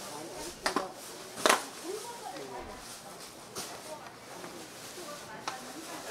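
A metal spoon stirring thick red chili seasoning sauce in a paper bowl, with a few sharp clicks as it knocks against the bowl, the loudest about a second and a half in. Faint voices in the background.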